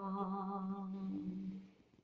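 A woman's voice softly holding the last note of a Christian devotional song alone, without accompaniment, with a slight waver, dying away about three-quarters of the way through.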